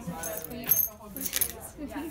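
A small plastic dustpan and brush being picked up and handled, rattling and clinking, with two sharper clatters about two-thirds of a second and a second and a half in.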